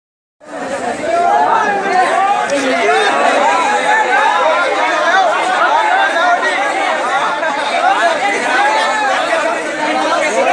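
A crowd of men talking over one another at close range: a loud, continuous babble of many voices, starting about half a second in.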